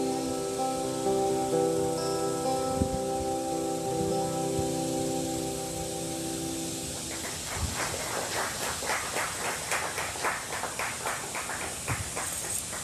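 Steel-string acoustic guitar ending a song: its final chords ring out and die away about seven seconds in. Then a few people clap, in a quick run of sharp claps.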